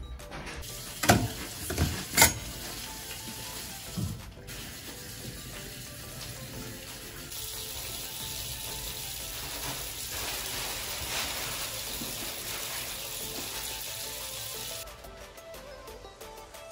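A few knocks and clicks in the first seconds, then a washbasin tap running with a steady rush of water for about seven seconds before it stops, with faint music underneath.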